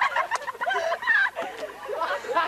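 Teenagers' high-pitched, warbling vocalising without clear words, quickly wavering up and down in pitch.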